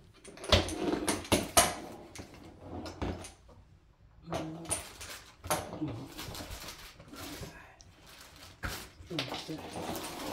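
Plastic packaging rustling and hard plastic parts knocking as an electric pressure washer's high-pressure hose and fittings are handled. The sharpest knocks come in the first two seconds.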